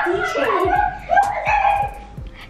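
A child's high-pitched wordless voice: two drawn-out calls that slide up and down in pitch, with a short break between them.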